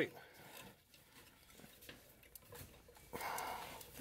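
Faint clicks, scrapes and small knocks of fingers working a tight plastic wiring connector and clip, with a short breathy puff of effort about three seconds in.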